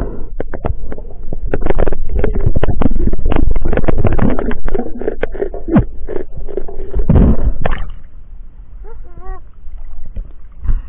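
Muffled underwater rumble heard through a diver's camera housing, with a rapid run of sharp knocks and clicks as a golden trevally speared on the shaft is pulled in and handled. After about eight seconds the noise drops, and a short wavering tone comes through near the end as the diver reaches the surface.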